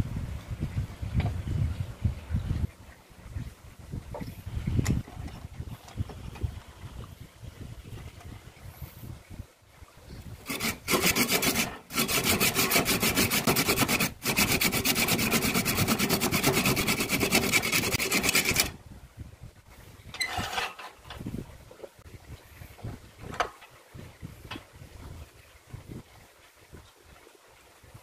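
A curved hand blade scraping the rough outer fibres off a dry bamboo section, heard as a loud, rapid rasping for about eight seconds in the middle. Softer handling knocks and short scrapes come before and after it.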